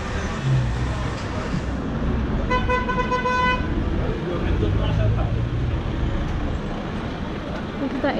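A vehicle horn sounds once, one steady tone of about a second, a couple of seconds in, over the constant hum of street traffic.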